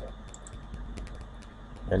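Faint, irregular clicking of computer input (mouse and keyboard), several clicks a second, over a low steady hum. A short spoken word comes right at the end.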